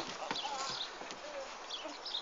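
Scattered light knocks and scuffs from someone clambering over a playground climbing frame.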